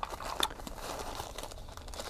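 Plastic bag and foam wrap crinkling and rustling as hands unwrap a knife from its packaging, a run of small crackles.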